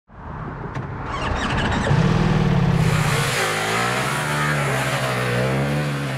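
Ducati Multistrada V4S's V4 engine running and being revved, its pitch rising and falling from about three seconds in.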